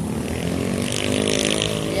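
A vehicle engine passing by, its pitch rising slightly and then falling.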